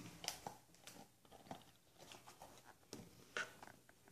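Faint scattered clicks and rubbing of a rubber Canadian C3 gas mask being handled and opened up.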